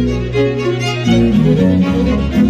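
Music: bowed strings, violin over a low bass line, playing held notes that change about a second in.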